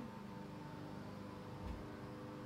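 Quiet room tone: a steady low electrical-sounding hum over a faint hiss, with one soft low thump shortly before the end.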